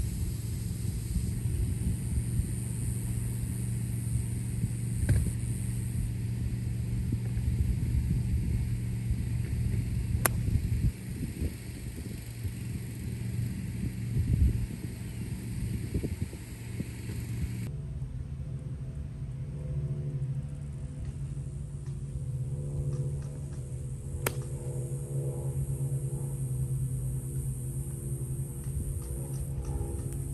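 Outdoor rumble with a steady low hum, broken by a couple of sharp clicks; a little over halfway through it gives way to background music of soft held chords.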